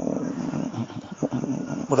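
A person's voice, rough and without clear words.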